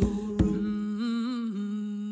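Vocal group humming a held chord in harmony: a steady low note under higher voices that waver with vibrato. It cuts off at the end.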